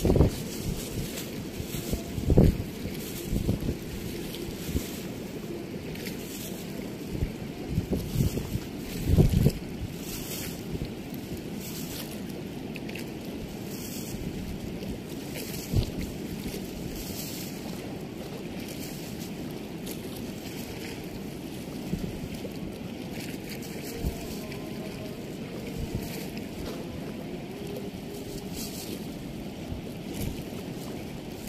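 Steady rush of water pouring through a weir's sluice gate, with wind buffeting the microphone in gusts, heaviest in the first ten seconds.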